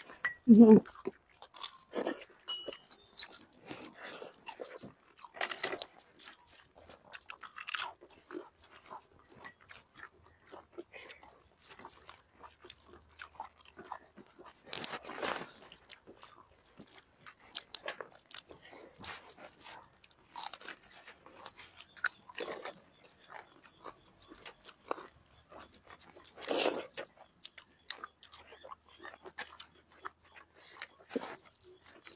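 Close-up eating sounds from several people eating a meal with their hands: irregular crunches, bites and chewing. Two crunches stand out, one about halfway through and one near the end.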